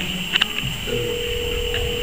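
A steady single-pitched electronic tone, like a telephone tone, held for just over a second after a brief high chirp.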